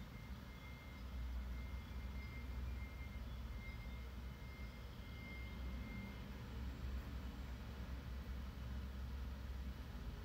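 Steady low rumble of background noise, with a faint thin high tone for the first six seconds or so.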